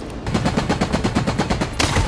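Automatic gunfire: a rapid string of shots starting a moment in, growing louder near the end.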